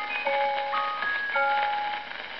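Dance-band 78 rpm record playing through a large-horn acoustic gramophone: a tinkling tune of high, bell-like single notes, a few a second, after the last sung line.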